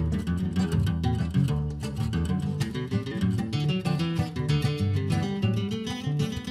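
Two acoustic guitars playing a frevo duet together, a quick run of plucked melody notes over a moving bass line.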